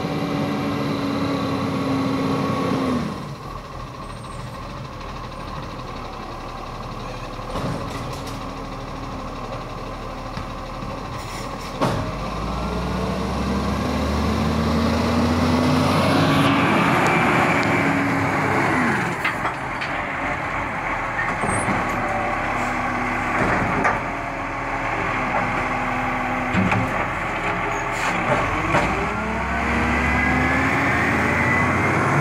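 Diesel engine of a side-loading garbage truck driving up, easing off about three seconds in, then pulling harder and rising in pitch until it is loudest as it passes close, about halfway through. After that it revs up and eases off in short bursts as it pulls in beside the bins, with a sharp knock just before the climb.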